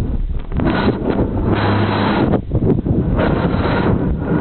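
Heavy wind buffeting the microphone of a camera carried on a swinging, spinning amusement ride, swelling in three surges as the car sweeps through the air.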